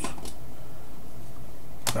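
A steady low hum with a sharp click near the end.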